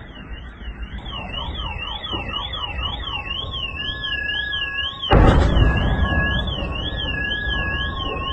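An electronic alarm wailing rapidly up and down, about twice a second, over a low rumble. A loud bang breaks in about five seconds in and dies away over the next second.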